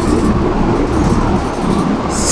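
Steady low rumbling noise with a hiss over it, heavy in the bass, in a short gap in speech.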